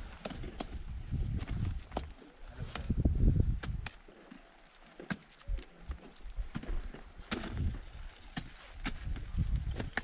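Ice axe picks and crampon front points striking an ice wall as climbers kick and swing their way up: a string of sharp, irregular knocks, with wind rumbling on the microphone.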